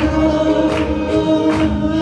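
A Nepali Christian worship song sung by a man into a microphone, over accompaniment with a steady beat.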